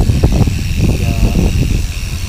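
Wind buffeting the microphone of a hand-held action camera on a moving bicycle: a heavy, steady low rumble, with a short spoken word over it.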